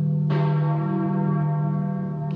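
Church bell tolling in mourning for Pope John Paul II's death: one fresh stroke about a third of a second in, ringing on with a long decay. A steady low drone runs underneath.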